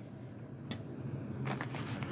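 Faint rustling and handling noise as things are moved about on a cloth-covered table, with one light click about two-thirds of a second in and the rustling rising near the end.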